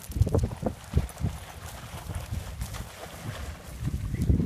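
Footsteps crunching on a gravel path, heard as irregular thumps in the first second or so, under a low rumble of wind on the microphone.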